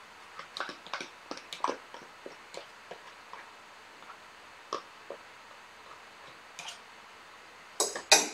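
Light clicks and taps of a fork against a small plastic container as feta cheese is crumbled and tipped into a salad bowl. The clicks are faint and irregular, several close together in the first three seconds, then a few single ones later.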